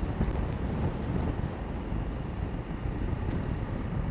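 Steady riding noise from a BMW F850GS parallel-twin motorcycle cruising at a constant speed: a low, even rush of wind on the camera microphone over the engine and road, with no changes in pace.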